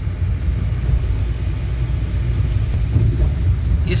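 Steady low rumble of a car driving along a road, heard from inside the cabin.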